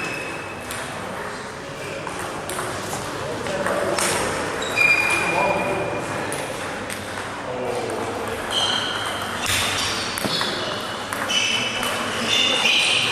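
Table tennis balls bouncing on tables and struck with bats: short, high pinging clicks at irregular intervals, from more than one table in a large hall, the loudest about five seconds in.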